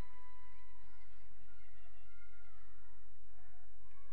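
A steady low hum with faint, distant gymnasium sounds from a basketball game barely above it.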